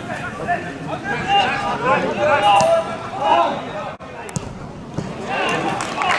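Men's voices shouting and calling out across an outdoor football pitch during an attack on goal. The sound cuts out abruptly about four seconds in, then the shouting resumes.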